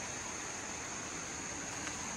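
Steady rushing of a shallow creek, an even hiss with a thin, steady high-pitched drone over it.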